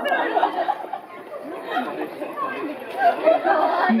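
Indistinct chatter of several people's voices, overlapping with no clear words.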